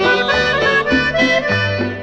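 Norteño band playing an instrumental fill between sung lines: an accordion runs a melody over a bouncing bass line and strummed guitar.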